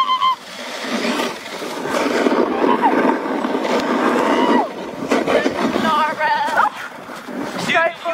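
A sled sliding and scraping over snow on the frozen river as it is towed, a steady rough hiss for about four seconds, with whooping and laughter from the riders around it.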